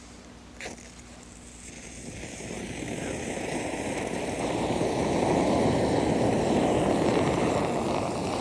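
A knife blade strikes a flint once, about half a second in, then a pinch of sodium chlorate weed killer mixed with sugar catches and burns fiercely, a rushing flame noise that grows louder over a few seconds and eases slightly near the end.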